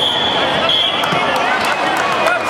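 A referee's whistle blown once: a steady high tone lasting about a second, with a brief dip partway through.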